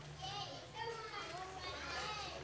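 Faint children's voices talking over one another, with a steady low hum underneath.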